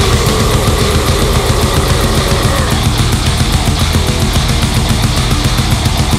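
Heavy metal band playing an instrumental passage with no vocals: guitars over fast, dense, evenly repeating drumming.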